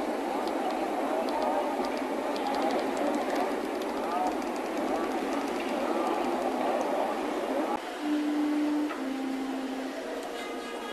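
Indistinct murmur of overlapping voices, with no words that can be made out. Near the end it gives way to two steady held tones, about a second each, the second slightly lower than the first.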